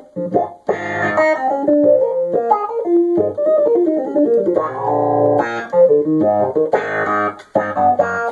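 A red Nord electronic keyboard played fast. Quick runs of single notes are broken by chords, with a fuller chord held briefly about five seconds in.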